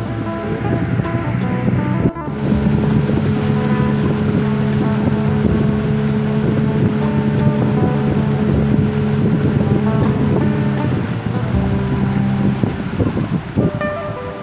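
Engine of a motorised longboat running steadily under way, with wind buffeting the microphone. There is a brief break about two seconds in, and the engine note shifts slightly near the end.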